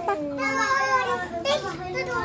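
Children's voices while playing: a drawn-out call in the first half second, then lively chatter.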